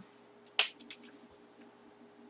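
A few sharp clicks about half a second in, one much louder than the rest, then faint ticks: handling noise from a football helmet and its plastic packaging.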